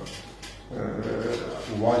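A man's voice: a drawn-out, hesitant sound between phrases, starting after a short lull about two-thirds of a second in.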